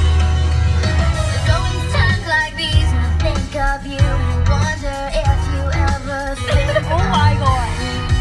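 A pop song playing loudly in a car, with a strong steady bass and a sung vocal line over it.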